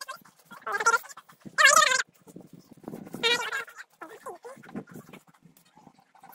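Three short, high-pitched wavering vocal cries: one about a second in, a louder one near two seconds, and a last one just after three seconds.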